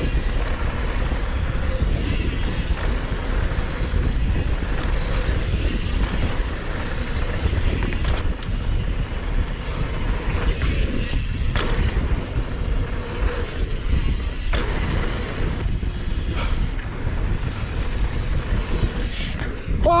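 Wind rushing over a helmet-mounted action camera's microphone and mountain bike tyres rolling fast over a dirt trail, with scattered sharp clicks and knocks from the bike.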